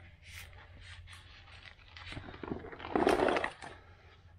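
An old cardboard-backed car door panel being handled and flipped over. Small clicks and knocks, then a short scraping rustle about three seconds in as it is laid down.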